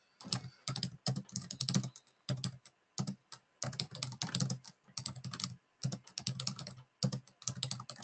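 Computer keyboard being typed on in quick bursts of clicks with short pauses between them, as text is entered through a pinyin input method.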